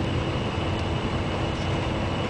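Steady engine and road noise inside a moving bus at highway speed: a continuous low rumble with a faint, even hum running through it.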